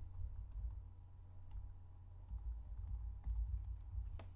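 Computer keyboard being typed on: a string of light key clicks as a word is entered, over a low steady hum.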